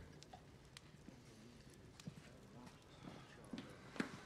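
Near silence: room tone with a few faint, scattered taps.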